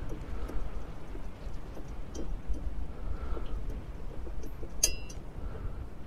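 Small metal parts being handled, with faint clicks and one sharp metallic clink that rings briefly near the end, over a steady low rumble of wind on the microphone.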